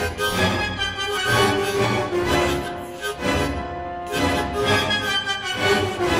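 Hohner harmonica played in short speech-like phrases of held chords, following the rise and fall of a lecture's sentences, with a brief break a little past the middle.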